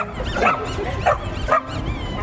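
Dogs barking: a few short barks about half a second apart.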